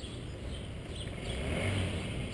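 A motor vehicle's engine running, growing louder over the second half and peaking near the end.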